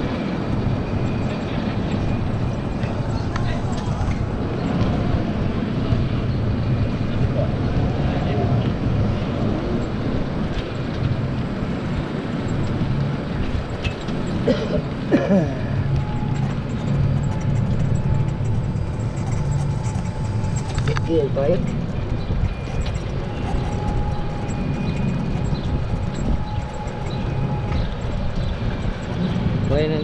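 Golf cart driving along a road: a steady low rumble of the moving cart and air rushing past the microphone, with brief voices about fifteen and twenty-one seconds in.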